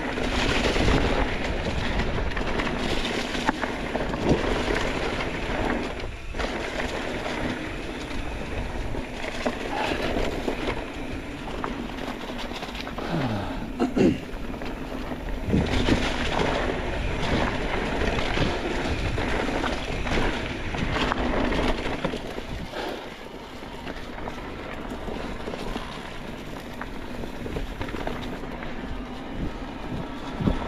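Ride noise from an electric mountain bike on a dirt trail covered in dry leaves: tyres rolling and crunching through the leaves, with the bike rattling and knocking over bumps. The sharpest knock comes about 14 seconds in.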